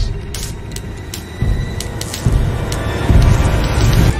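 Dark, tense film score with a deep low rumble that swells from about halfway through, and a few sharp clicks in the first two seconds.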